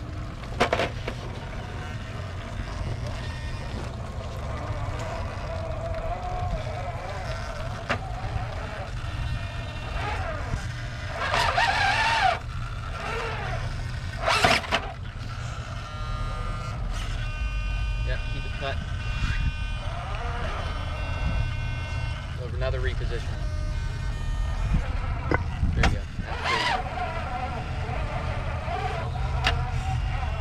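Electric motor and gears of an RC scale crawler truck whining as it crawls slowly over rocks, steadiest from about the middle of the stretch, with wind rumbling on the microphone.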